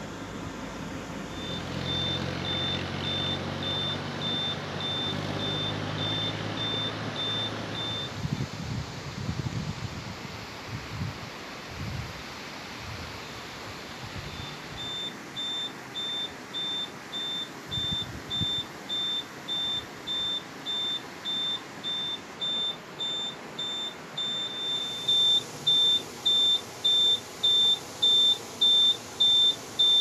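An electronic vehicle warning beeper sounds a high, even beep about twice a second. It stops for several seconds mid-way, then starts again and grows louder near the end. An engine runs under the beeps for the first several seconds.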